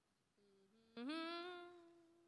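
A person humming with closed lips: a faint short hum, then from about a second in a louder single held note that rises slightly and fades away.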